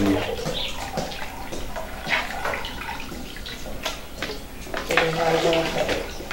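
A hand working freshly set cheese curd in its whey inside a large aluminium pot: liquid sloshing and splashing while the curd is settled and the whey comes off slowly.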